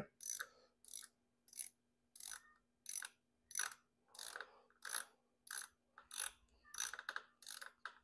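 A small hand ratchet clicking in short, evenly paced strokes, about thirteen of them, as it unscrews a hose clamp on a heater hose.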